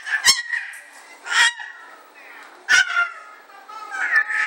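A baby squealing in short, high-pitched, honk-like bursts, three times.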